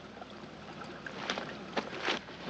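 Quiet, steady hiss of outdoor background ambience on an old film soundtrack, with a few faint clicks in the second second.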